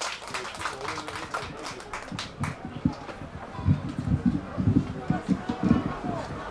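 Scattered hand claps in the first couple of seconds, then a run of quick, low thumps on a traditional Korean barrel drum from about three and a half seconds in.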